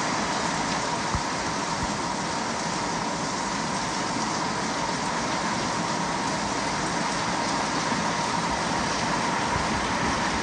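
Heavy rain pouring down on a roof: a loud, steady, even hiss.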